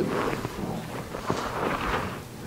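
Footsteps and shuffling of children walking up to the front of a room, with a couple of light knocks.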